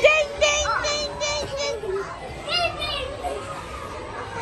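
Young children's high-pitched voices, with music playing in the background.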